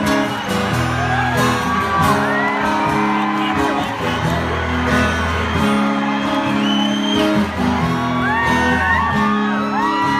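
Live band holding chords on acoustic guitars, the chord changing every few seconds, under a crowd cheering, with many high whoops and screams.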